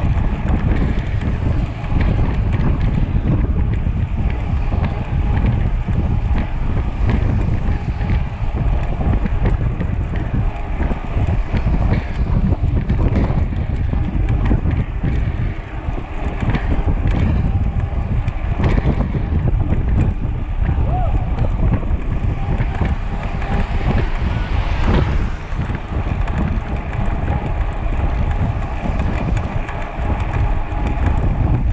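Loud, constant wind buffeting on an action camera's microphone from a mountain bike being ridden at about 40 km/h.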